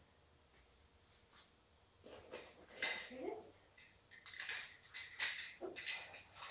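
Light clinks and rustles of objects being handled in a cardboard box, starting about two seconds in, with a short rising voice-like sound about three seconds in.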